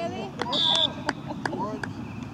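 A whistle blown once, a short high steady blast about half a second in, restarting play, over young children's voices on the field; a few sharp taps follow.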